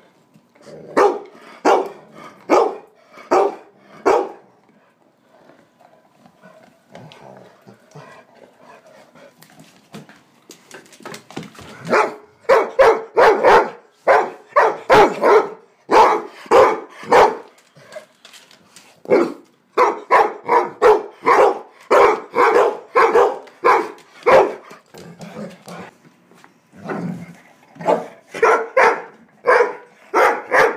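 Dog barking repeatedly in play, in quick runs of short barks. There are a few barks near the start, then a quieter stretch, then a long fast series of barks lasting about twelve seconds, and more barking near the end.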